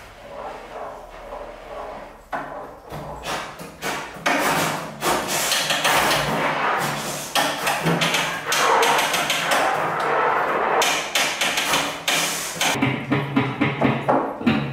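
Free-improvised music for tuba, trombone, drums and guitar: a dense, irregular clatter of sharp percussive strikes and noisy scrapes over low sustained tuba tones, growing busier and louder after about two seconds. The strikes include sticks on a prepared snare drum with a small cymbal laid on its head.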